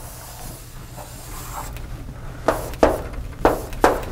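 Chalk scraping on a chalkboard as a curved outline is drawn: a long scratchy stroke over the first second or so, then four short, sharp chalk strokes in the second half.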